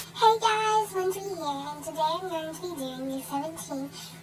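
A young girl singing a short phrase, her voice gliding up and down in drawn-out syllables, over a faint steady low hum.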